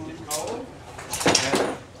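Dry crackling and clatter of split bamboo culm strips being handled, loudest in a short spell a little over a second in.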